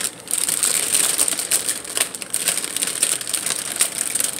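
A person chewing a cotton candy grape close to the microphone, a run of small crackles and clicks.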